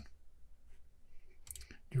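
A few faint computer mouse clicks during a pause, clustered about one and a half seconds in. A voice starts speaking right at the end.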